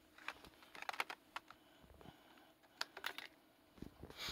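Irregular light clicks and taps coming in small clusters, a few near the start, a quick run about a second in and another near three seconds, over faint room tone.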